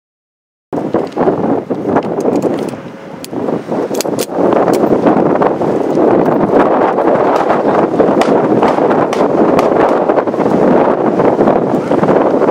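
Wind buffeting the camera microphone: a loud, steady rushing noise that starts abruptly under a second in, after silence, with a few faint clicks around the middle.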